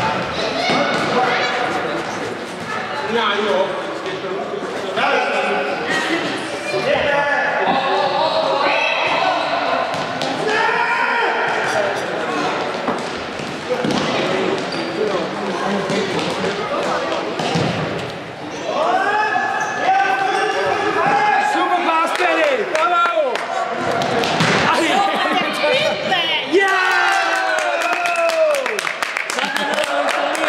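Indoor football match in an echoing sports hall: players and spectators shouting and calling, with the ball's kicks and bounces thudding on the hall floor and boards. Voices rise into louder, excited shouting near the end.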